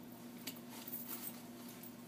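Faint handling of a Stokke Xplory stroller's harness straps and strap covers: soft rustling with a few light clicks, over a low steady hum.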